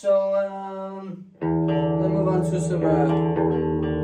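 Electric guitar played through a Mesa/Boogie Studio Preamp: a held note for about a second, then a loud chord struck about a second and a half in and left to ring.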